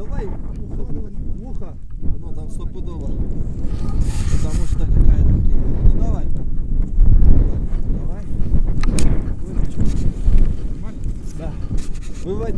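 Strong wind buffeting the camera microphone, a low rumble that grows louder through the middle, with people's voices underneath and a sharp click about nine seconds in.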